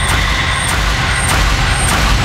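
Trailer sound design: a heavy low rumbling drone under a thin, steady high tone, with sharp ticks repeating regularly, a little under twice a second.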